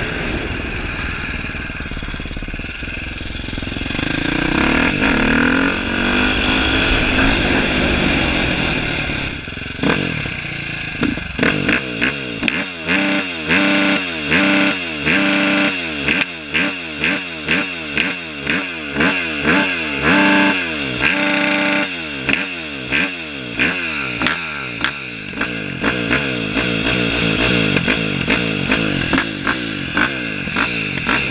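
KTM 450 SX-F motocross bike's single-cylinder four-stroke engine being ridden, rising in revs once early on. From about a third of the way in, the throttle is blipped over and over, the revs shooting up and falling back about one and a half times a second, before it settles back to steadier running near the end.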